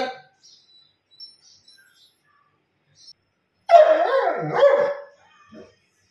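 A German Shepherd dog barking twice in quick succession about four seconds in, followed by a short third sound.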